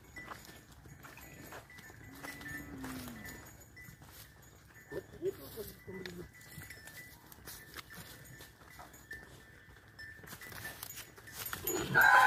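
Two crossbred cows being led on foot over dry cane stalks: faint scattered hoof steps and rustles, with a faint low call a couple of seconds in. A loud call begins right at the end.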